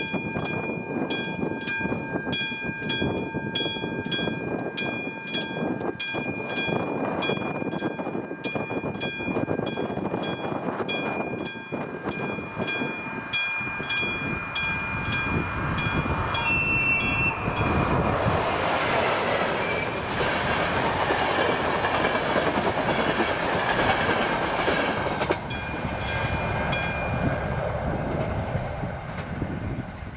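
Level-crossing warning bell of AŽD 71 crossing signals ringing in steady, evenly spaced strokes. About 17 seconds in, a train gives a short horn blast and passes over the crossing with loud wheel and rail noise that drowns the bell. The bell stops shortly before the end.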